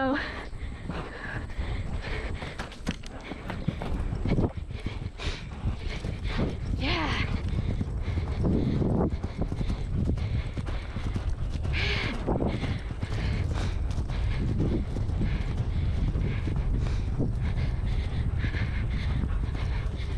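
Horse cantering on turf, its hoofbeats heard from the saddle under a steady rumble of wind on the helmet camera's microphone.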